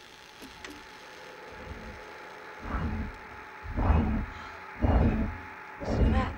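A received radio-telescope signal played aloud through an amplifier and speakers: a train of deep pulses about one a second, an amplitude-modulated pulse signal. The first pulse is faint and the next ones come louder as the volume comes up, over a faint steady hum.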